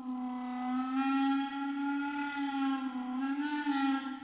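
Solo clarinet holding one long low note, its pitch wavering slightly and bending up a little about three seconds in.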